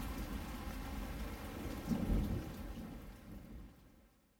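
Recorded rain with a low rumble of thunder about two seconds in, part of the soundtrack rather than the scene, fading out to silence near the end.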